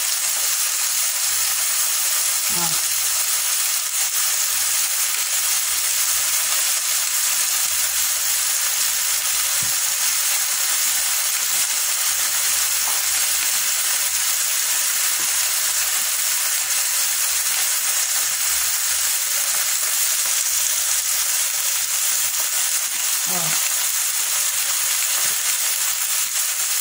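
Bone-in pork chops frying in an electric multicooker pan: a steady, even sizzle throughout.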